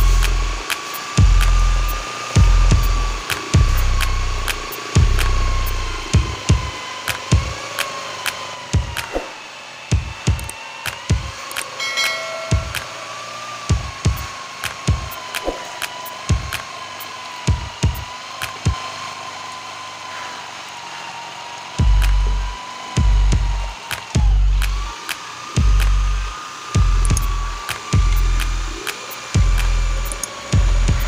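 Corded electric drill with a paddle mixer running steadily in a bucket of white skim-coat mortar (acian putih), its motor whine wavering slightly under load and stopping briefly about 24 seconds in. Background music with a heavy beat plays over it, the beat dropping out through the middle.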